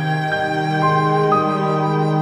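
Instrumental film-score music: a violin plays a melody line over sustained low notes, changing note a few times.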